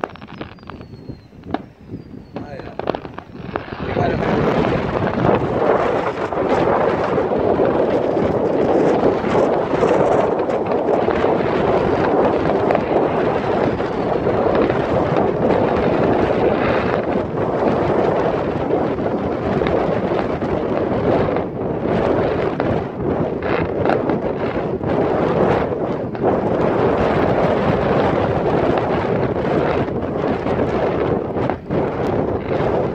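Fireworks display: bursting shells give scattered bangs, with a few falling whistles in the first seconds. From about four seconds in, a steady, loud rushing noise covers everything.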